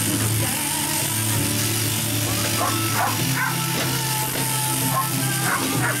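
Shearing handpiece running steadily as it clips wool from a merino ewe's crutch, with music playing and a dog barking now and then from about halfway in.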